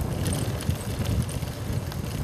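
Wind buffeting the microphone of a camera carried on a moving bicycle: an uneven low rumble.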